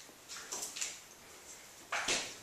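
A dog close by making three short, faint, breathy sounds in the first second, then another small one.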